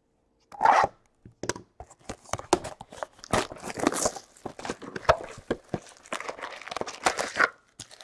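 A sealed trading-card hobby box being torn open: a loud rip about half a second in, then several seconds of irregular crinkling and crackling of plastic shrink wrap and cardboard.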